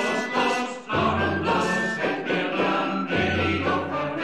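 Background choral music: a choir holding sustained notes, with deep bass notes coming in about a second in and again about three seconds in.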